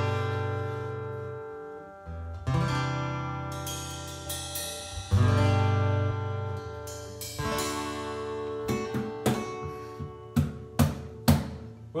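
Two acoustic guitars strumming big chords that ring out and fade, a new chord about every two and a half seconds. Sharp drum kit hits join in the second half of the passage.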